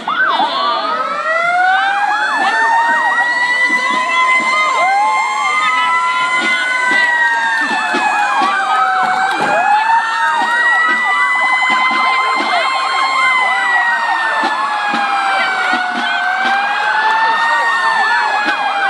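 Several emergency-vehicle sirens wailing at once, loud. Their pitches sweep slowly up and down and overlap, with quicker warbling passages, and they start suddenly.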